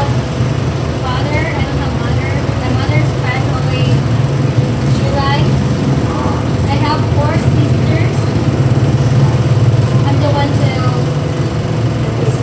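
A machine humming steadily and low, the loudest sound throughout.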